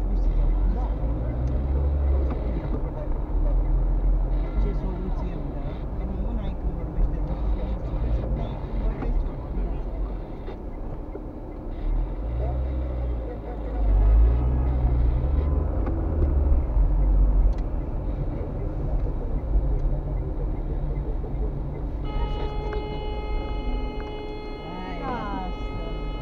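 Car interior noise picked up by a dashcam while driving in traffic: a continuous low engine and road rumble, rising in pitch a few times as the car pulls away and accelerates. A steady hum with several pitches joins near the end.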